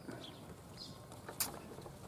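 Faint outdoor quiet with a few short, high bird chirps and one sharp click about one and a half seconds in.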